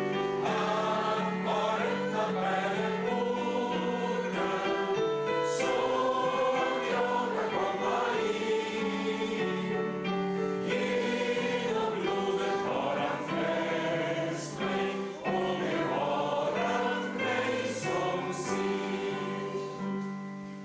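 A congregation singing a hymn together, accompanied by an electric keyboard that holds sustained chords under the voices.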